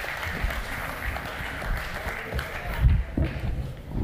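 Audience applauding, the clapping thinning out near the end, with a low thump about three seconds in.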